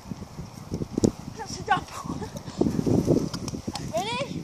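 Indistinct children's voices, with short bits of talk or vocal sounds, over rustling and knocking close to the microphone.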